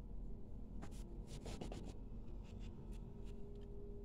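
Faint scratching and soft clicks of a metal crochet hook drawing yarn through stitches, in a loose run of strokes through the middle.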